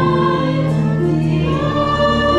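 Two women singing a hymn through microphones, holding long notes that change pitch about one and a half seconds in.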